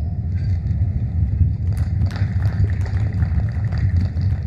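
Steady low rumble of outdoor background noise, with faint scattered ticks above it.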